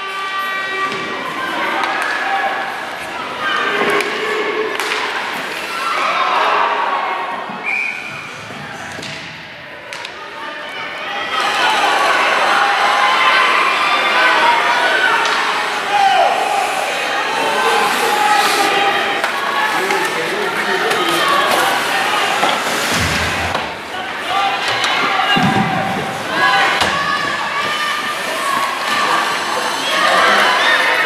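Ice hockey rink crowd chattering and cheering, growing louder about a third of the way in, with occasional sharp thuds from the play on the ice.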